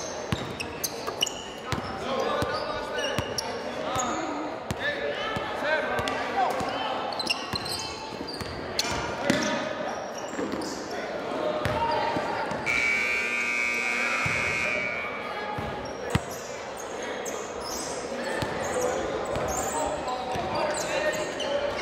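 Basketball game sounds in a gym: a basketball bouncing on the hardwood floor, sneakers squeaking, and players' and spectators' voices echoing in the hall. A long, steady high tone sounds for about two seconds past the middle.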